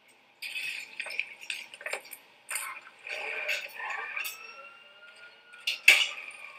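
Video game sound effects from the TV in the film: scattered short noisy bursts and clicks, with a long tone that rises and then slowly falls in pitch through the second half.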